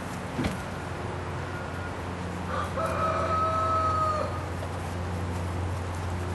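A rooster crowing once, one long level-pitched call a little before the middle, over a steady low electrical hum. A short knock sounds about half a second in.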